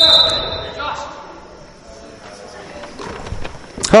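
A basketball bouncing on a hardwood gym floor, with a series of short knocks in the second half, over faint voices in the gym.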